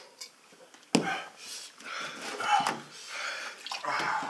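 A sharp knock about a second in, then milk glugging out of a plastic gallon jug into a glass in uneven spurts.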